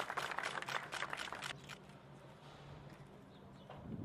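Camera shutters clicking rapidly and irregularly, dying away about two seconds in, over a faint steady low hum.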